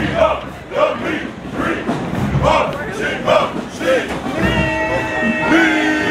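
A group of marching band members chanting and shouting together, then brass horns come in with long held notes about four seconds in, with a few low thuds underneath.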